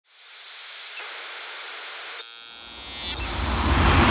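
Synthesized logo-intro sound effect: a steady hiss, which turns into a brief buzzy tone a little past halfway, then swells with a deep rumble growing louder near the end.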